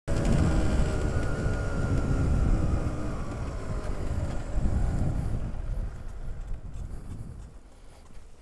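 Motorcycle engine running with a low rumble as the bike rides along, its pitch sinking a little over the first few seconds, then growing quieter in the second half as the bike slows.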